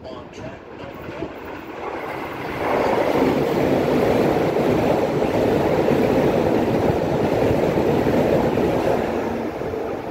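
Keisei 3100-series electric commuter train passing through a station at speed without stopping. A rush of wheels on rail builds and turns loud about two and a half seconds in, holds steady for about seven seconds as the cars go by, then eases off near the end as the train clears.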